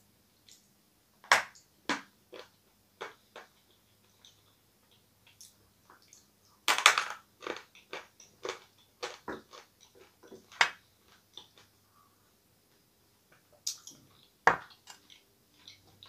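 A person biting and chewing a hard, dense chunk of dried edible clay: irregular sharp crunches as it breaks between the teeth, the loudest about seven seconds in. The clay is very hard to bite off.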